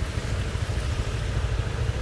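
Road traffic driving through a flooded street: a minivan and motorbikes running through standing water. A steady low rumble comes through, with a fainter hiss over it.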